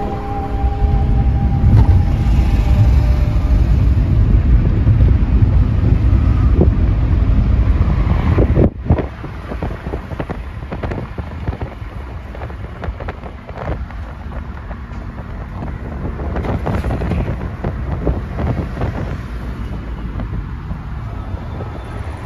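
Car moving along a road, heard from inside the cabin: a heavy low rumble of wind and road noise. About nine seconds in the level drops suddenly to a quieter, steadier road noise with a few light knocks.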